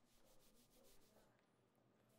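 Very faint rubbing strokes, the hair-stroking sound of fingers brushing through hair. There are several quick strokes in the first second or so, then they fade.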